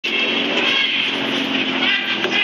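Steady city street traffic noise from passing cars, with a voice over it.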